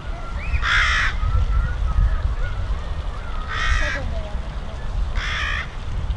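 A corvid cawing three times, short harsh calls spaced a couple of seconds apart, over a steady low wind rumble on the microphone and faint thin whistled notes of smaller birds.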